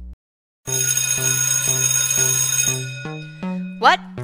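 School bell ringing loudly for about two and a half seconds, pulsing about twice a second, signalling the end of class. It starts just after a held music chord cuts off.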